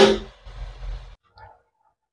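A slotted metal spatula knocks against a wok in a short metallic clatter at the start, followed by about a second of scraping and handling noise.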